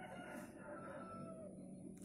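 A rooster crowing once, faint: a single drawn-out call of a little under two seconds that tails off at the end.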